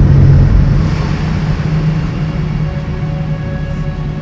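Dark midtempo electronic bass music: a heavy rumbling bass line, loudest at the start and easing a little, with a faint held tone coming in about three seconds in.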